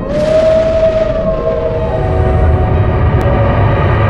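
A sudden thunderclap with a deep rumble, over a held, slightly falling tone in a dark horror-film soundtrack.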